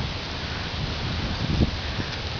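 Wind blowing through a maple tree, the leaves rustling steadily, with low wind rumble on the microphone and a short low bump about one and a half seconds in.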